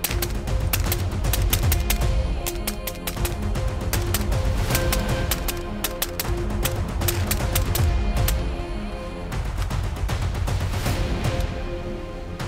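Suppressed 300 AAC Blackout AR-style rifle firing shot after shot in an irregular string, over background music.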